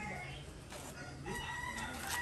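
A rooster crowing faintly: one held call starting a little past halfway through.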